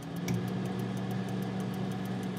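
Steady electric hum of an oven running while it bakes, with a faint fast ticking over it.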